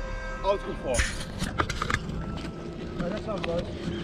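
Footsteps on dry dirt with scattered small knocks and faint voices in the background.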